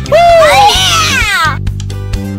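A person's high-pitched excited whoop, rising and then falling in pitch, ending about a second and a half in, over background music.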